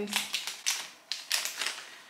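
Plastic sweet packet crinkling as it is handled, a run of irregular sharp crackles.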